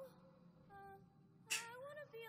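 A few short, high cries, each rising in pitch, with a sharp click about one and a half seconds in.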